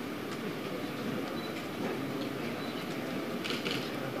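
Steady room noise of a press room between speakers, a low even rumble and hiss, with a few faint clicks and a brief rustle about three and a half seconds in.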